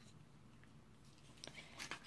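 Near silence, with a few faint clicks in the second half as a small plastic thread snipper is fiddled open in the hands.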